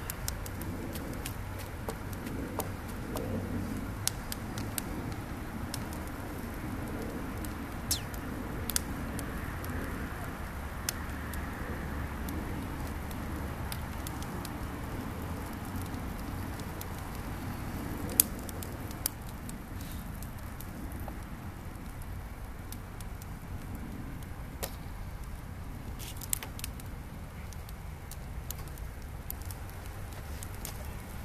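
Large bonfire of scrap wooden boards burning with a steady low rush, with sharp crackles and pops from the wood scattered through it. The loudest pop comes about eighteen seconds in.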